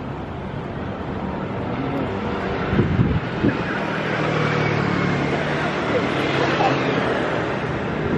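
Road traffic: vehicles passing on the street alongside, their engine and tyre noise growing louder a couple of seconds in and staying loud.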